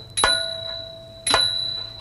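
Two strikes on small metal percussion from a nang talung shadow-puppet ensemble, about a second apart, each ringing with high bell-like tones and fading away.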